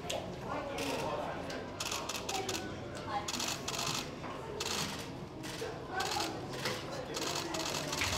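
A string of irregular, sharp hand slaps from a run of high-fives, over a babble of voices in a busy corridor.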